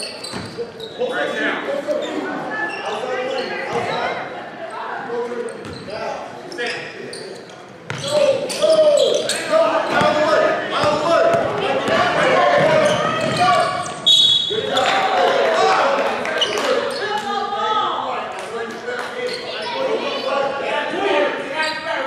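Basketball game in a large gym: a ball bouncing on the hardwood court, with voices from players and spectators echoing in the hall that grow louder about a third of the way in. A short, high referee's whistle sounds roughly two-thirds of the way through.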